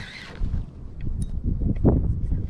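Wind rumbling on the microphone, with a few faint clicks and one knock near the end.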